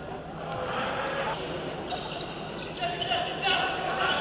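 Live sound of an indoor basketball game: the ball knocking on the hardwood court and sneakers giving short high squeaks, with voices calling out in the hall, louder near the end.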